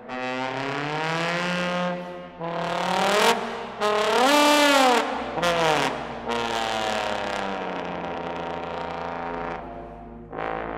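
Solo trombone with orchestra playing modern concert music: held notes rich in overtones, with pitch glides. The loudest is a slide that arches up and back down about four seconds in.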